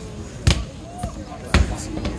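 Heavy strongman dumbbell dropped from overhead onto a rubber-matted platform: two heavy thuds about a second apart.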